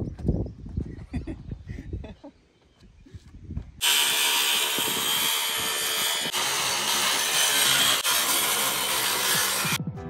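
Boots thumping on the new AdvanTech OSB subfloor for about two seconds. Then, about four seconds in, a cordless DeWalt circular saw cuts through an AdvanTech subfloor sheet, running loud and steady for about six seconds and stopping abruptly just before the end.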